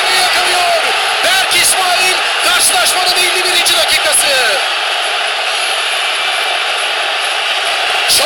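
Football stadium crowd cheering a goal: a dense mass of voices with individual shouts standing out, easing slightly about halfway through.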